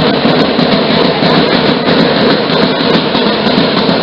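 Drums accompanying the Danza Apache, heard as a loud, dense, steady clatter.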